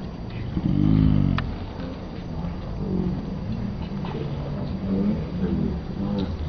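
Street ambience with a steady low rumble of traffic and indistinct voices of people. About a second in there is a louder sound whose pitch rises and falls.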